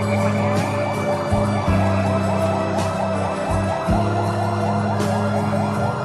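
A vehicle siren in a fast yelp, rapid rising sweeps repeating several times a second, over background music.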